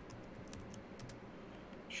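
Computer keyboard being typed on: faint, irregular key clicks.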